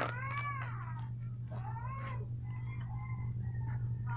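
Kitten meowing: a high, rising-and-falling meow about a second long, a shorter one about two seconds in, then fainter short calls. A steady low hum runs underneath.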